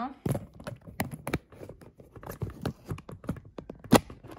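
Handling noise from a phone camera being moved and set in place: irregular clicks, taps and rubbing, with one sharp knock near the end.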